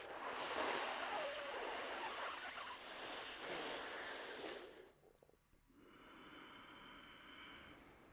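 Shitali breath: a loud, hissing inhale drawn through a rolled tongue against as much resistance as possible, lasting nearly five seconds. After a short pause comes a softer, longer exhale.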